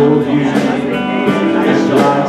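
Live country band music, with guitar carrying the tune between the singer's lines.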